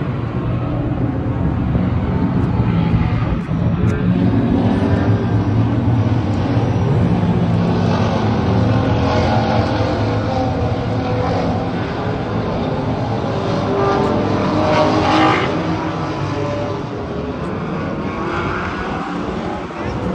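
Car engines running, a loud, steady engine noise throughout.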